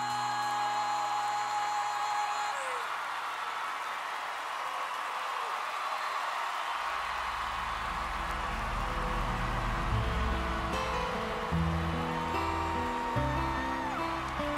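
Studio audience applauding as the last held note of the song dies away in the first couple of seconds. From about halfway, backing music with a stepping bass line comes in under the applause.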